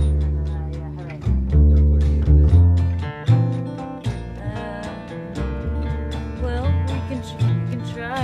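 Band take of a song: upright double bass plucking long, deep notes that change every second or so, under a strummed and picked steel-string acoustic guitar.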